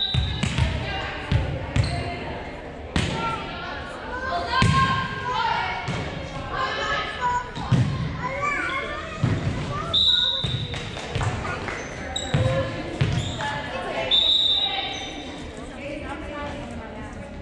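A volleyball bounced on a hardwood gym floor before a serve, then hit in play, a series of sharp thuds echoing in a large gym, amid players' and spectators' voices.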